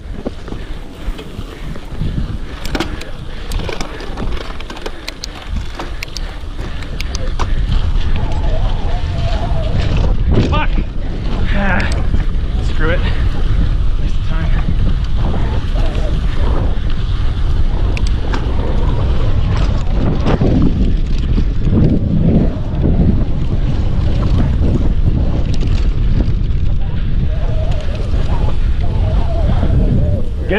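Wind rushing over a GoPro's microphone on a mountain bike ridden down bumpy dirt singletrack, growing louder over the first several seconds and then holding steady. Clicks and rattles from the bike over the trail run through it.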